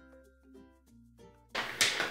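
Soft background music of separate, evenly spaced notes that cuts off abruptly about one and a half seconds in. It gives way to louder room sound with a couple of sharp clicks.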